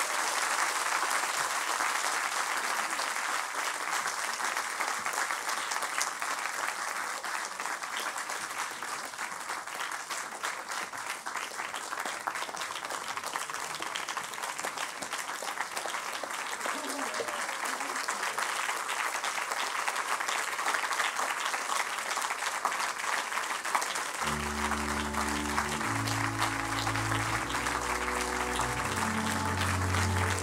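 Audience applauding steadily throughout. About three-quarters of the way through, recorded music with low, changing chords begins under the clapping.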